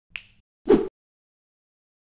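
Logo-intro sound effect of two short snaps: a faint, high click just after the start, then a louder, lower snap a little before a second in.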